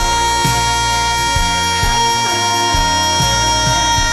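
Male pop singer belting one long high note, held steady for about four seconds over a band with drums and bass.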